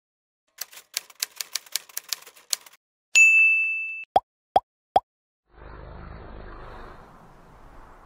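Intro title sound effects: a run of typewriter keystrokes for about two seconds, then a bell ding that rings out, three quick rising pops, and a soft whoosh that fades.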